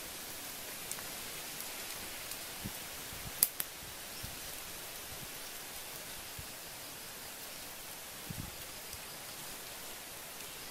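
Squid sizzling on a flat rock heated over a wood fire: a steady hiss, with a sharp double click a few seconds in.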